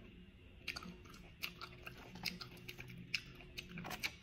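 Close-up chewing of steamed whelk (bulot) meat: after a quiet moment, a run of irregular, sharp wet mouth clicks starts under a second in.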